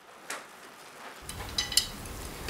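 A pot of broth boiling gently, a faint bubbling hiss with a few light clicks of a metal ladle against the stainless steel pot.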